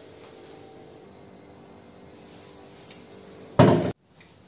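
Low steady room hum. Near the end comes a short, loud burst of noise that is cut off abruptly at an edit.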